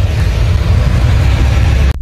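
Loud, steady rumbling outdoor noise picked up by a handheld phone microphone, with no clear tone or rhythm, cutting off abruptly near the end.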